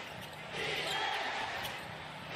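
A basketball being dribbled on a hardwood court over steady arena background noise.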